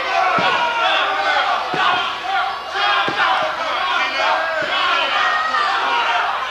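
Wrestling crowd shouting and yelling, many voices overlapping, with four or five short, dull thuds scattered through.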